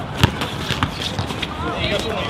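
A basketball bouncing on an outdoor hard court. The strongest bounce comes about a quarter second in, followed by lighter knocks, with players' voices calling out near the end.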